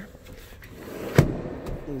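A second-row seat of a Toyota Highlander being worked: a rubbing, sliding noise builds up, then a single sharp clunk from the seat latch and slide track about a second in.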